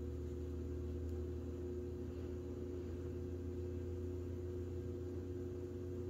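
Steady low electrical hum made of a few constant tones, holding level throughout.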